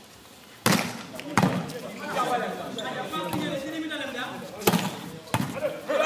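Sharp smacks of a volleyball being hit during a rally, four in all: a pair about a second in and a pair near the end. Players' voices call out between the hits.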